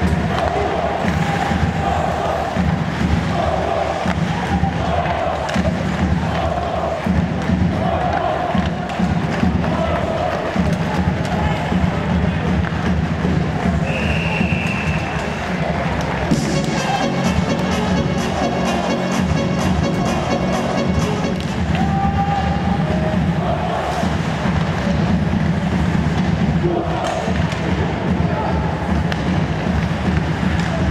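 Ice hockey arena crowd, fans chanting in a steady rhythm. A short high whistle sounds about halfway through.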